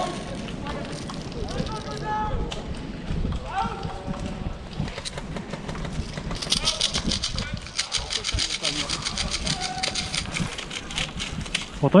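Handling and rustling noise, then a fast, even run of small sharp clicks, like a ratchet being wound, from about six and a half seconds in until just before the end, as a small object is worked in the hands.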